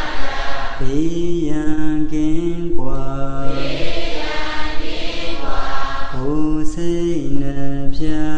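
A Burmese Theravada monk chanting solo into a microphone: one male voice holding long notes that step up and down in pitch, pausing briefly between phrases.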